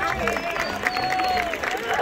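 Audience applauding, with crowd voices mixed in.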